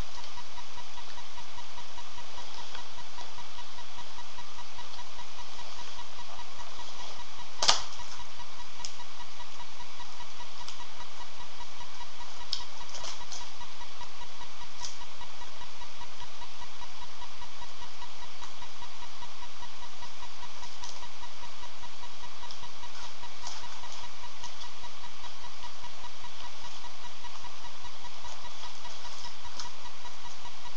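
A steady electrical hum and buzz with a pulsing low drone, and a few faint clicks, the sharpest one about eight seconds in.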